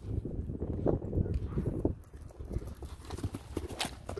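A horse's hoofbeats on turf as it comes in toward a brush fence at a canter and takes off over it, with a sharp click near the end.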